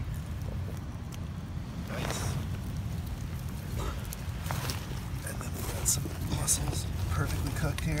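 A steady low rumble with scattered clicks and brief crackles as sea urchins and mussel shells are handled and set down on beach pebbles.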